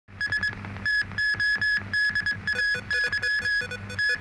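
Electronic news theme music: a repeated high synthesizer beep in a quick rhythm of short and longer pulses over a pulsing bass.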